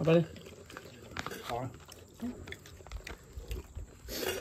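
A short burst of voice at the very start and another brief murmur of voice about a second and a half in, with a few faint clicks and taps between, over low room sound.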